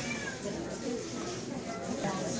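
A cat meows briefly near the start, a short call that falls in pitch, over people talking in the background.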